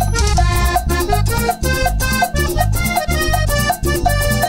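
Live guaracha dance band music: a melody line over a steady, evenly repeating dance beat.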